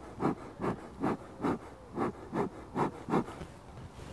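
Bee smoker bellows being squeezed in quick, regular puffs, about two and a half a second, each a short rush of air blowing smoke into the hive entrance to calm the colony before an inspection.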